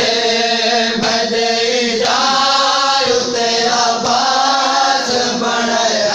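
Group of men chanting a noha, a Shia mourning lament for Abbas, sung continuously and loudly in a flowing melody.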